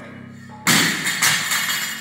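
Loaded barbell dropped onto a rubber gym floor: a sudden crash about two-thirds of a second in that carries on for about a second as the bar and plates settle, over background music.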